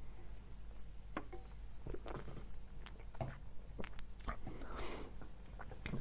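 Low steady hum with scattered faint clicks and soft mouth noises close to the microphone.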